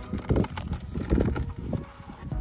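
A few dull knocks and handling sounds, spread irregularly through two seconds, as a gloved hand moves around a car's plastic side-mirror cap.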